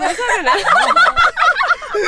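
Several women laughing loudly together in quick, high-pitched, overlapping bursts.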